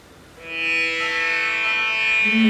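Instrumental music starts about half a second in: a held chord of many steady tones in an Indian classical style, with plucked or bowed strings.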